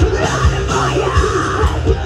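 Live rock band playing: a vocalist screaming into the microphone over distorted electric guitar and driving drums.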